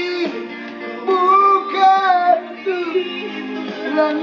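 A man singing a slow song in a high voice, holding long notes with a wavering vibrato and breaking briefly between phrases.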